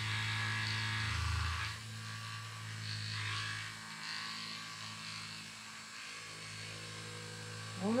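Handheld massage gun running, its round percussion head pressed along the shoulder blade, making a steady electric buzz. It is louder for the first two seconds, then softer for the rest.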